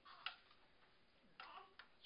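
Near silence: quiet room tone with a few faint, brief clicks, one near the start and a few more in the second half.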